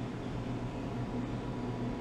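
Steady low hum with an even hiss from running cooling equipment.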